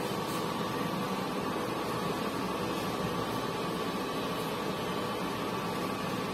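Steady background room noise: an even hiss with a faint, steady high hum running through it, and no distinct events.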